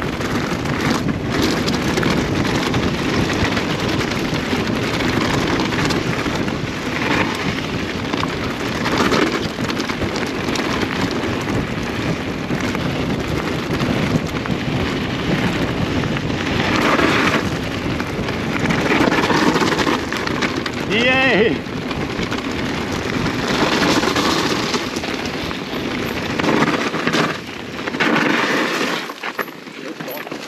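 Wind rushing hard over an action camera's microphone on an e-mountain bike in a fast descent, with tyre noise beneath it. A brief wavering high squeal comes about 21 seconds in, and the rush eases near the end.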